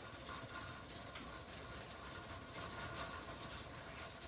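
Steady, quiet steam hiss from a pressure canner at work, with a few faint soft cuts of a chef's knife slicing through a roll of potato candy on a silicone mat.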